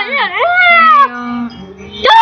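A high-pitched voice wailing in a wobbling, cat-like warble that turns into one long falling cry, then tails off.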